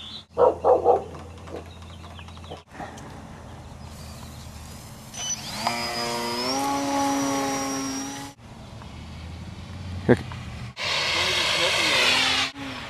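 A dog barks three times near the start. Later a whine with many overtones rises in pitch and then holds steady for about three seconds: the electric motor of a small RC plane spinning up.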